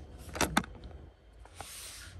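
A stack of Pokémon trading cards being handled: two quick clicks about half a second in, then a short papery rustle near the end as the cards are slid through.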